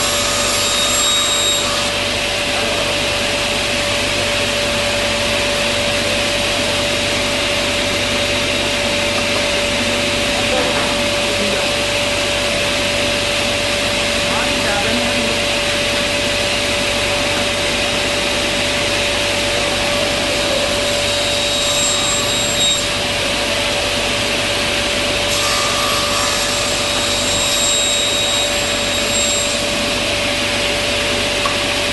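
Sliding-table saw's motor and blade running steadily, a constant whirring hum with one steady tone through it.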